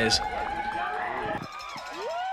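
Trackside spectators shouting and whooping as a rider passes: a held shout that breaks off about one and a half seconds in, then rising whoops near the end.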